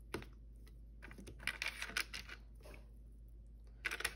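Irregular light clicks and crinkly rustles of hands handling food and packaging on a kitchen counter, thickest in the middle of the stretch.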